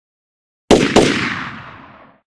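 Two gunshots in quick succession, about a quarter of a second apart, each a sharp crack followed by a long echoing decay that fades out over about a second.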